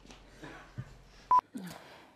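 Short electronic beeps, each one high pure tone lasting about a tenth of a second: one at the very start and another just over a second in, over faint background noise.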